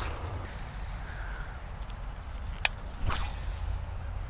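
Steady low wind rumble on a chest-mounted camera's microphone, with one sharp click a little past halfway and a short scuffing rustle about half a second later, from handling noise as a fishing rod is picked up.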